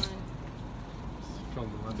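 A single sharp click as the motorhome's exterior compartment door latch is released, followed by a steady low background hum with faint murmur of voices; a voice starts speaking near the end.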